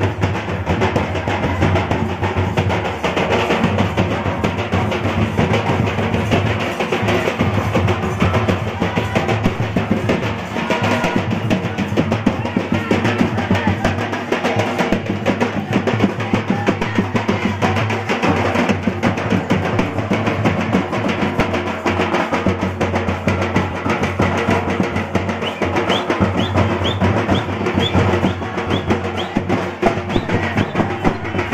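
Folk drums beaten with sticks in a steady, continuous dance rhythm, as music for group dancing. A few short high rising tones come in near the end.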